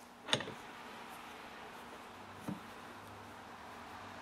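Quiet room tone with light metal clicks as an open-end wrench is set onto the jammed bar-stud nuts: one sharp click about a third of a second in and a softer tick about halfway through.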